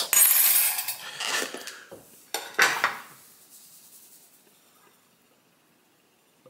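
A plate and a salt canister being handled on a table: a clatter of crockery in the first second and another knock about three seconds in, then it dies away.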